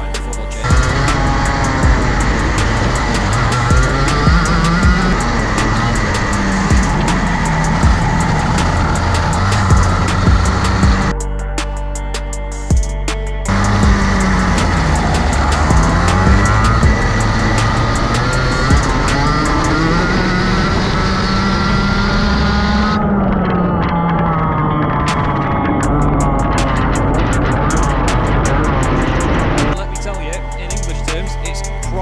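A packed field of Rotax Max 125cc two-stroke racing karts running flat out, their engine notes rising and falling together as they accelerate and brake through the corners, over background music. The engines drop out for a couple of seconds about 11 seconds in, leaving only the music.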